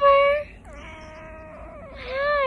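Cat meowing: a short loud meow right at the start, then a longer, quieter, drawn-out meow.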